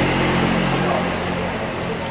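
Yamaha Cygnus-X scooter's single-cylinder engine idling steadily, a low, even hum that eases off slightly towards the end.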